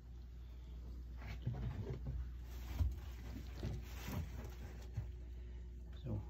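Steady low machinery hum in a boat's engine room, with irregular knocks and rustles of someone moving about and handling the phone between about one and five seconds in.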